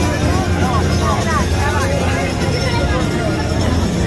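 Crowd of people talking in a busy street, with a few nearer voices rising and falling between about half a second and two and a half seconds in, over a steady low rumble.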